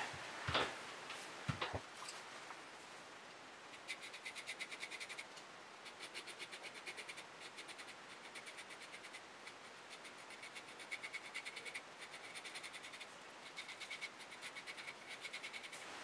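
Pocket knife blade scraping through beard whiskers in rapid short strokes, about six a second, in runs of a second or so with brief pauses. A couple of soft knocks come first.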